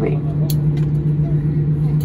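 Steady low hum with rumble inside an airliner cabin at the gate, with a single sharp click about half a second in.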